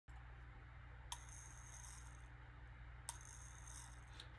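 Two faint clicks about two seconds apart, each followed by a brief high jingling rattle lasting about a second, as a small hand-held object is shaken, over a low steady hum.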